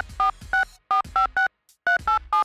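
Telephone keypad touch-tone (DTMF) beeps as a number is dialled: about seven short beeps in quick succession, with a brief pause before the last.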